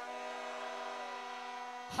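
A held chord of several steady tones, about two seconds long, played over a PA system. It starts and cuts off abruptly.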